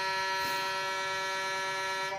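A steady horn-like tone sounding a chord of more than one pitch, held without change in pitch or level.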